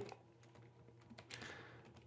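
A few faint computer keyboard keystrokes in the second half, otherwise near silence.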